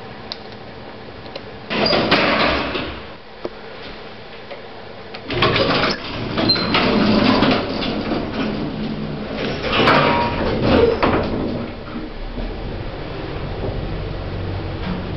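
A vintage 1960s lift: a click as the call button is pressed, then its sliding doors running, with bursts of door noise about 2 s in, from about 5 to 8 s and again around 10 s. A low hum builds near the end.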